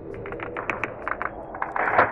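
Intro sound effect of a cracking planet: a quick series of sharp crackling clicks that come thicker and faster, then a rising rush of noise near the end.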